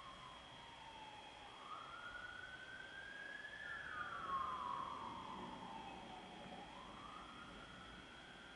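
A faint siren wailing, its single tone sliding slowly up for about two seconds, down for about three, and starting to rise again near the end, over a steady faint high whine.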